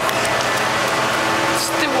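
Steady background of a busy café: a constant machine hum under the murmur of voices.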